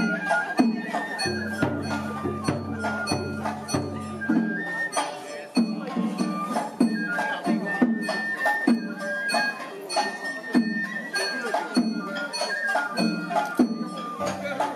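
Oyama-bayashi festival music: bamboo flutes play a stepping high melody over a steady beat of drums and small hand gongs.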